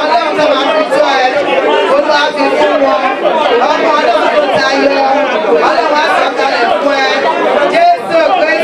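Several people praying aloud at once in overlapping voices, with a woman's voice amplified through a microphone among them.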